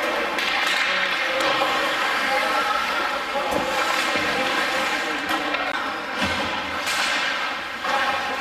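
Ice hockey rink ambience during play: a steady wash of spectators' voices, broken by a few sharp knocks of sticks and puck.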